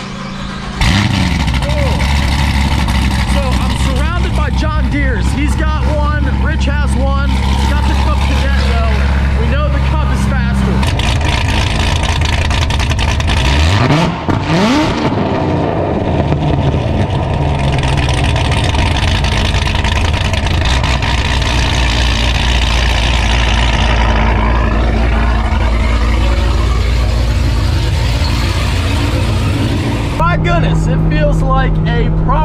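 Chevrolet Corvette ZR1 (C7) supercharged 6.2-litre LT5 V8 cranking and catching about a second in, then idling loud and high. The idle steps down a little about a third of the way in, a single quick rev rises and falls near the middle, and it settles back to a steady idle.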